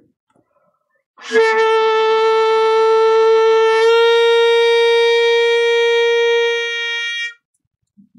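Alto saxophone holding one long note on octave G as a scoop exercise: it starts a semitone flat, played with a loosened embouchure, and steps up to the true pitch about halfway through, then is held until it cuts off shortly before the end.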